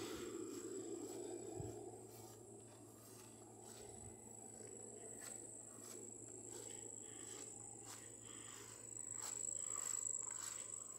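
Summer insects singing, a steady high even trill that swells slightly near the end, with faint footsteps on grass.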